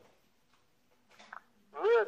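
A gap of near silence between speakers, broken by one brief faint sound a little past the middle, then a man's voice starts loudly near the end.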